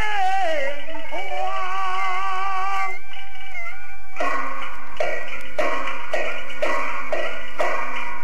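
Peking opera painted-face (jing) singing from an old gramophone recording: a long, wavering held note that dips once. From about four seconds the opera percussion comes in, striking about twice a second under the accompaniment.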